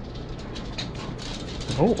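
Dogs shifting about on a hard floor, with light, scattered clicks of claws and collar tags over a steady low hum.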